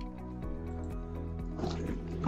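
Background music: sustained chords over a low bass line with a steady light beat, the chord changing about half a second in. A brief noise comes near the end.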